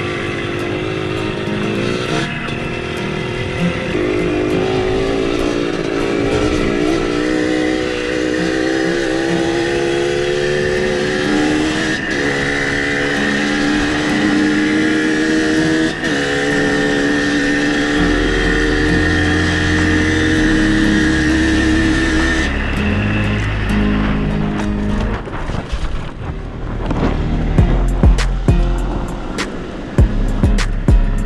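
A dirt bike's engine running under way, its pitch climbing as it accelerates and then holding steady. Background music with a stepping bass line plays along and comes to the fore in the last few seconds.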